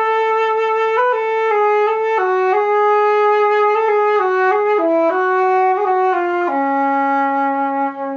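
Trevor James Recital silver flute with a Flutemakers Guild of London headjoint playing a slow melody with quite a loud, dark tone, as a string of held notes. It settles on a long low note near the end.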